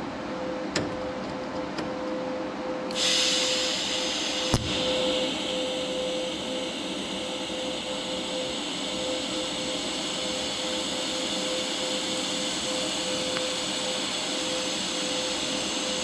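TIG welding arc on a thick steel frame rail: a steady hum, then about three seconds in the arc strikes and runs with an even hiss while a bead is laid. A single sharp click sounds a little after the arc starts.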